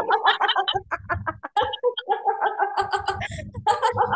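A group of people laughing out loud together in a laughter-yoga exercise, in short choppy bursts with some drawn-out voiced laughs.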